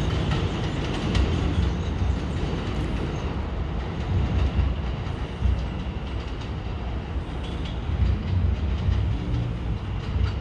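R160 subway train running away along the elevated track: a steady rumble of wheels on rail with light clatter and a faint high whine.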